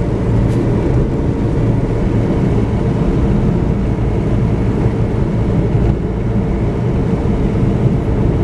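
Steady low rumble of road and engine noise inside the cabin of a moving vehicle.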